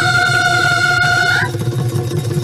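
Bihu folk music: a long, high held note that slides up and breaks off about one and a half seconds in, over continuous drumming.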